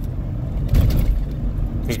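Car cabin noise: a steady low rumble with a brief louder whoosh a little under a second in.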